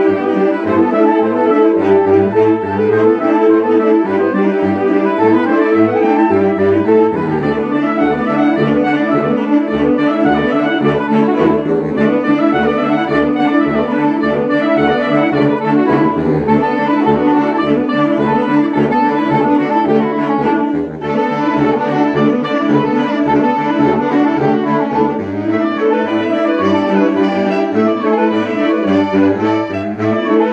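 A saxophone ensemble, soprano and alto saxophones among them, playing a piece together in several parts. A low part pulses in steady repeated notes through the middle, and the music dips briefly about two-thirds of the way through.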